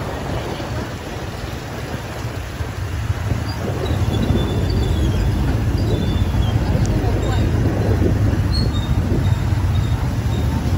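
Motorbike engines running with a steady low rumble of road and wind noise, heard from a moving motorbike in a convoy; it grows louder from about three seconds in.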